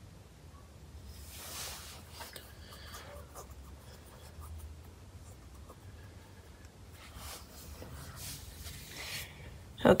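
Faint rustling and scraping in a few soft stretches, over a low steady hum.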